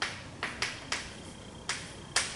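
Chalk clicking and tapping against a blackboard while writing: about five sharp clicks, one at the start, a quick pair around half a second in, one just before one second and one near the end.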